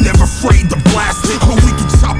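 Boom bap hip hop track: a heavy drum beat with a kick about every half second, and a man's rapping voice over it.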